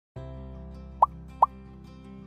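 Two short rising bubble-pop sound effects, about half a second apart, over soft background music.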